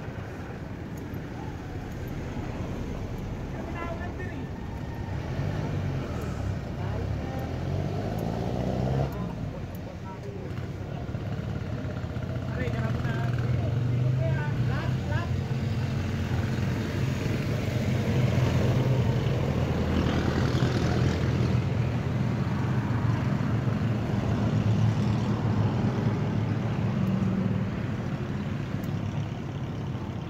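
A motor vehicle engine running nearby. Its pitch climbs a few seconds in, then it runs steadily and louder through the middle, easing off near the end.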